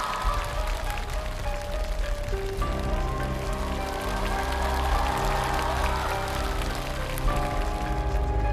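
Stage music: held, drawn-out chords over a hissy texture, with a deep bass line coming in about two and a half seconds in.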